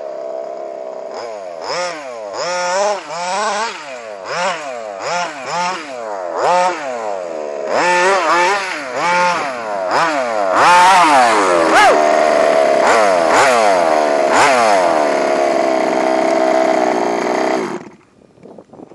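Baja RC buggy's 28.5cc two-stroke engine with a Mielke side-mounted pipe, revved in a quick series of short blips that rise and fall. After about ten seconds it is held at higher revs with a few more blips, then stops suddenly just before the end.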